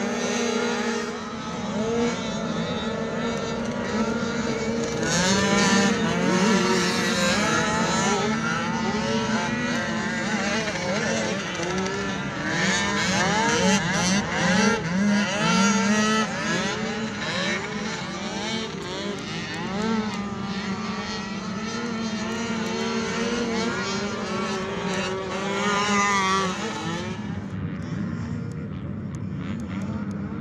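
Youth ATV race engines on a dirt motocross track, revving up and down through the gears, with several engines overlapping in the middle; the sound drops away about three seconds before the end.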